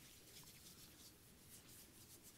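Near silence: room tone with faint rustling of papers being handled at a lectern, a few light scratches near the end.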